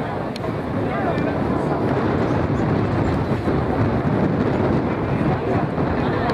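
Indistinct voices of rugby players and spectators over a steady rumbling background noise.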